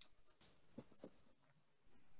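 Near silence: room tone through a video-call microphone, with a couple of faint small clicks about a second in.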